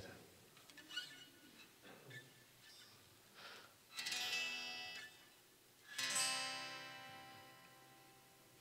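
Guitar strummed twice, a chord about halfway through and another some two seconds later, each left to ring and fade.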